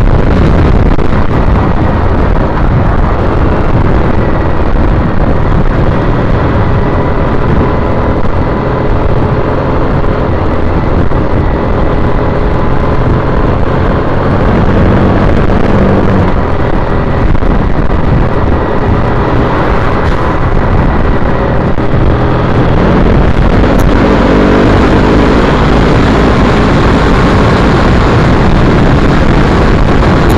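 2010 Triumph Bonneville T100 motorcycle riding at road speed: its parallel-twin engine running under loud, steady wind rush on the microphone.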